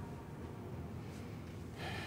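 A person's short breath near the end, over a steady low room rumble.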